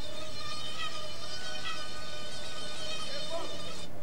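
Anopheles mosquito in flight: a steady, high whine of the wings with many overtones, wavering slightly, which cuts off just before the end as the mosquito settles on skin.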